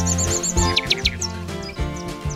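Bird chirps over calm intro music: a quick run of five high chirps at the start, then a few short falling whistles about a second in.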